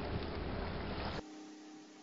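Steady wind noise rumbling and hissing on an outdoor camera microphone. It cuts off abruptly a little over a second in, leaving only a faint low electrical hum.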